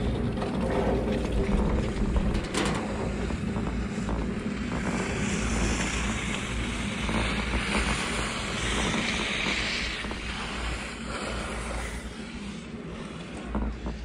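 Riding a Riblet fixed-grip double chairlift: a steady rumble and hiss of wind and motion noise on the microphone, with a single sharp clack about two and a half seconds in as the chair passes the tower's sheave wheels. The noise eases off a little near the end.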